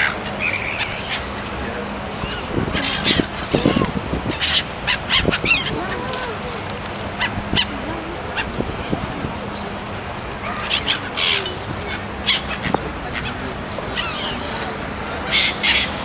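Gulls calling repeatedly in short harsh cries over a steady rush of wind and water.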